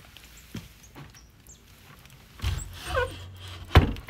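A wooden plank hut door being pulled shut: a short squeak falling in pitch, typical of a hinge, then a sharp bang as the door closes near the end. A few light knocks come before it.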